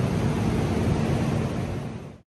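Steady rushing noise of a workshop with a faint low hum underneath, fading out near the end.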